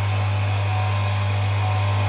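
GEOX GL-RS1 electric high-pressure washer running under pressure: a steady, loud motor-and-pump hum with a hiss of noise over it.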